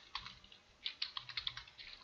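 Typing on a computer keyboard: a couple of keystrokes, a pause of about half a second, then a quick run of keystrokes.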